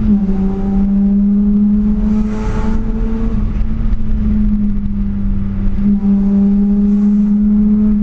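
BMW E36 328i's 2.8-litre straight-six pulling in gear, heard from inside the cabin: a loud, steady engine drone whose pitch rises slowly for about three seconds and then holds level.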